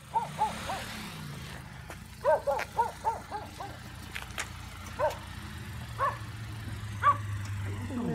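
A dog giving short, high yips: three early on, a quick run of about six around two seconds in, then single yips about a second apart. A steady low hum runs underneath.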